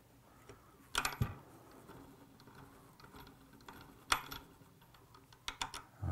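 Small clicks and taps from handling a fly-tying vise and thread bobbin: two sharp clicks, about a second in and about four seconds in, and a few light ticks near the end.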